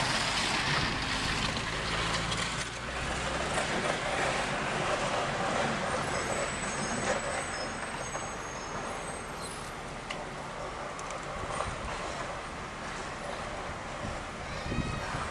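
Delivery truck engine running close by, with a steady low hum that fades after about three and a half seconds, leaving a steady hiss of street noise.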